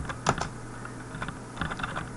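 Keystrokes on a computer keyboard: irregular separate clicks, one early and a quicker run of several in the second half, as code is typed.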